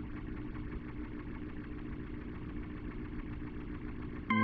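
Arturia B-3 V tonewheel-organ emulation between notes, sounding only a steady low hum and rumbling noise with faint held tones. This is the plugin's idle background noise while no keys are played.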